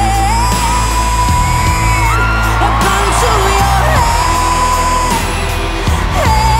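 A young woman belting long, high held notes into a microphone over loud backing music with a heavy bass. The first note is held for over a second, then the voice steps briefly higher about two seconds in, and returns to another long held note near the end.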